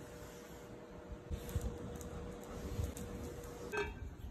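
Faint knocks and handling noise from a pool brush on an aluminium pole being pushed across the pool, over a steady low hum. A short louder scrape comes just before the end.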